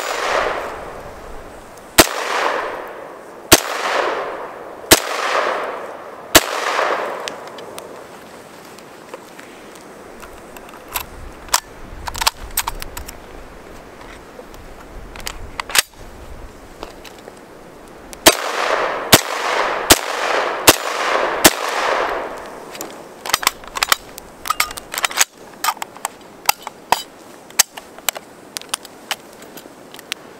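SKS semi-automatic rifle (7.62×39 mm) firing two strings of five shots, each shot trailing a long echo. The first five come about a second and a half apart; the second five, about two-thirds of the way in, come faster, under a second apart. Quieter sharp clicks fall between the strings and near the end.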